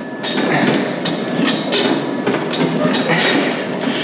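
A gym leg extension machine in use: continuous rattling and clanking, with irregular knocks.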